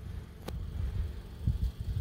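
Wind buffeting the microphone: an uneven low rumble that comes and goes in gusts, with one sharp click about half a second in.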